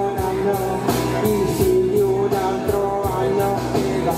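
Karaoke backing track of a pop-rock song with a steady beat, and a woman singing along into a microphone, holding long notes between lines.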